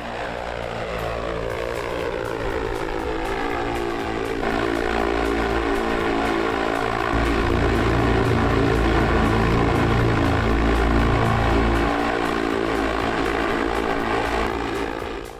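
Propellers of an electric multirotor flying car, the XPeng X2, in flight: a steady, pitched buzzing hum with many even overtones. A heavier low rumble comes in through the middle of the stretch.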